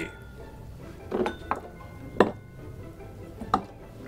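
Whiskey tasting glasses clinking and knocking on the wooden bar as they are picked up, with four light knocks, the loudest about halfway through.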